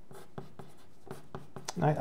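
Pencil writing on paper: a series of short, quiet scratching strokes as numbers and a fraction bar are written.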